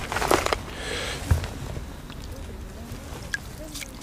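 Handling of a wet landing net and a freshly caught chub at the water's edge: rustling and sloshing of the mesh with water splashing and dripping, a few clicks early on and a single knock about a second in, then quieter handling.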